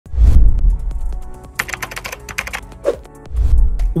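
Intro music sting: a deep bass boom at the start, a quick run of keyboard-typing clicks in the middle, and a second bass boom near the end.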